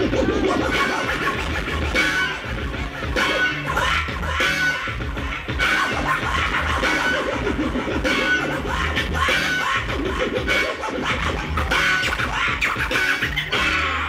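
DJ scratching a vinyl record on a turntable, the scratches chopped by the mixer's crossfader, over a beat with a steady bass pulse.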